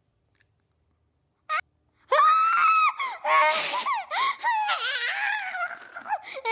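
A boy squealing in a high-pitched, wailing voice and laughing, loud, starting about two seconds in with sliding pitch.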